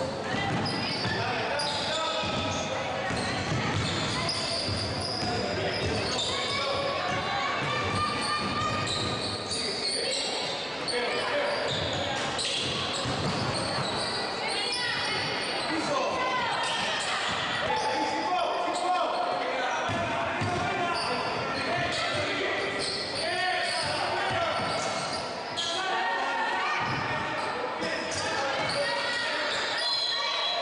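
Basketball bouncing on a hardwood court during live play, with players' and spectators' voices calling out throughout, echoing in a gym.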